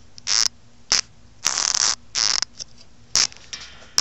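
Five short scraping and rubbing noises from a phone camera mount being handled and adjusted, with a faint steady hum underneath.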